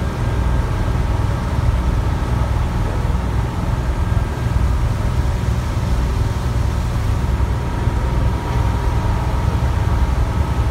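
Tour boat under way: the engine's steady low rumble fills the sound, with a faint steady hum above it and the wash of water and wind.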